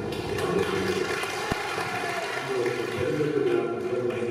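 Steady rushing crowd noise in a large hall, with a man's voice coming over the PA microphone at times and a single low knock about one and a half seconds in.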